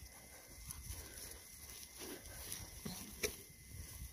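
Goats moving through pasture grass, with faint bleats and a few short rustles and knocks in the second half, all at a low level.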